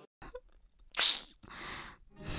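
A young woman's sharp, noisy crying breath about a second in, followed by a softer, longer breath.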